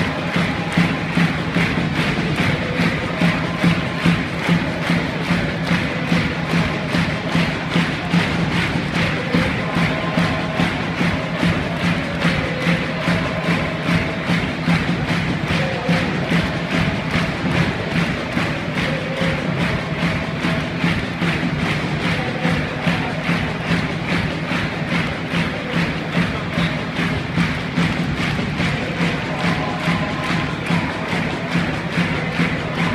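Football supporters singing a chant together over a steady drum beat.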